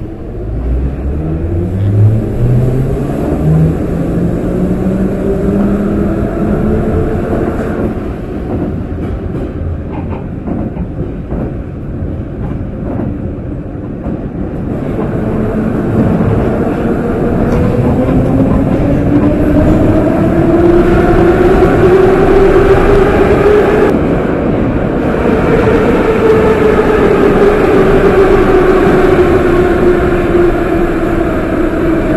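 Moscow metro train running from the inside of a car. The traction motors whine rising in pitch as it pulls away, it runs on more quietly with track noise, the whine rises again, and it falls away near the end as the train brakes into the station.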